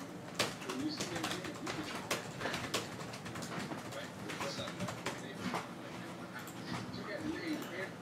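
Faint, indistinct voices murmuring in the background, with scattered sharp clicks and taps throughout.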